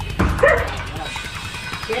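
A dog barking and yipping in short calls, the loudest about half a second in, among people talking.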